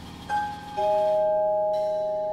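Vibraphone notes struck in a quiet passage: a higher note a little after the start, then a louder chord a moment later, the bars ringing on and fading slowly over low notes dying away underneath.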